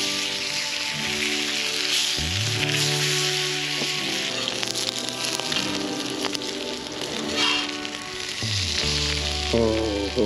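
Breaded cod fillets and eggplant slices sizzling on a hot cast iron griddle over a wood fire, with background music playing throughout.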